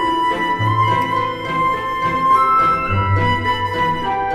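Background music: a slow melody of held notes over long, changing bass notes.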